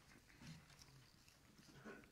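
Near silence: room tone, with a faint, brief low sound about half a second in.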